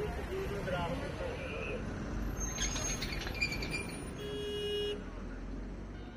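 Car engines idling and creeping forward in a slow traffic queue, a steady low rumble, with voices talking in the first two seconds. A short car horn toot sounds about four seconds in.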